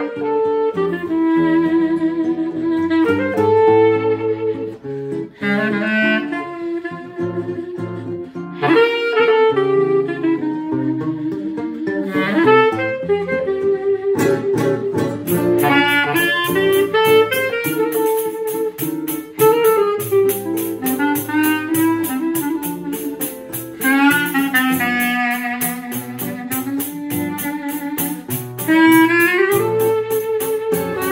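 Choro trio: a clarinet plays the melody over a seven-string nylon-string guitar's chords and bass runs. About halfway in, a pandeiro joins with a quick, even jingle rhythm.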